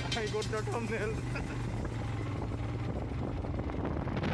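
Motorcycle engine running steadily under wind rush on the microphone while riding. A voice is heard briefly in the first second or so.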